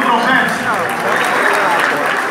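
Audience applauding, with voices over the clapping.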